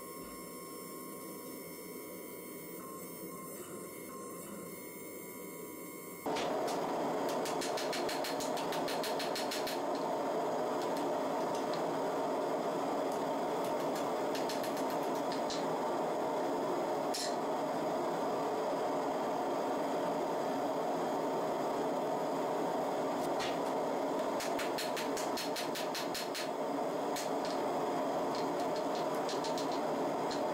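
A faint hiss, then about six seconds in a sudden step up to a steady rushing noise, like a forge running in a shop. No hammer blows stand out, so the hammering of the glowing steel is not plainly heard.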